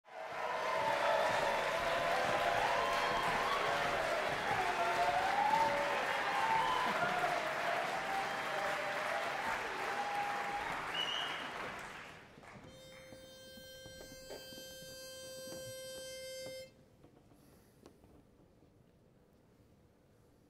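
Audience applause with cheering, fading out after about twelve seconds. Then a pitch pipe sounds one steady note for about four seconds, giving the barbershop quartet its starting pitch.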